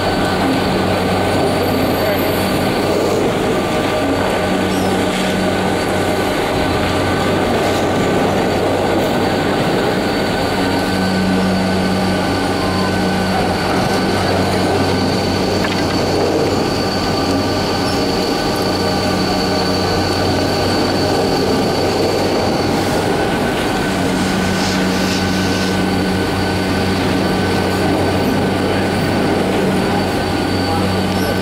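Detachable high-speed quad chairlift running through its terminal: a steady mechanical whine and hum of several held tones from the lift's wheels and machinery as the chair rolls along.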